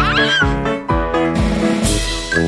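A baby's giggle in the first half-second, its pitch wobbling up and down, over bouncy children's theme music with a steady beat. A short hiss comes near the end.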